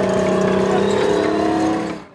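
Tracked armoured personnel carrier driving past at close range: a steady engine drone with several held tones that drops away near the end.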